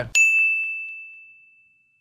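A single high, bell-like ding sound effect, struck just after the start and ringing out as one pure tone that fades away over nearly two seconds, with the room sound cut out beneath it.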